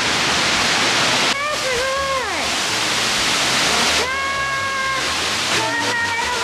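Fukuroda Falls, a large four-tiered waterfall, gives a loud, steady rush of falling water, heard from the access tunnel as the falls come into view.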